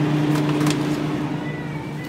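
A steady low hum that fades out about one and a half seconds in, with a few light knocks as a plastic gallon juice jug is taken from a cooler shelf.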